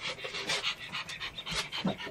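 A dog panting in quick, irregular breaths, several a second.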